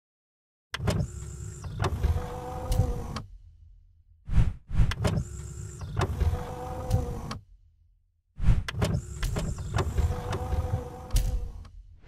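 Intro-animation sound effect: a mechanical whirring, sliding sound heard three times, each about three seconds long and opening with sharp clicks.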